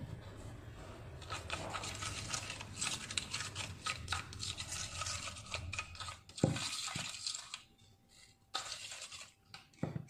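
A plastic spoon stirring and scraping granulated sugar in citrus juice around a small plastic bowl, a steady gritty scraping of quick strokes for about six seconds. Two dull knocks follow, then a short burst of stirring near the end.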